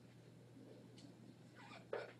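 Near silence: classroom room tone with a low steady hum, a faint tick about a second in, and a brief short sound just before the end.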